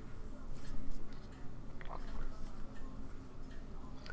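Handling noise from fingers turning over a small clock case: a few scattered light clicks, about one a second early on, over a steady low hum.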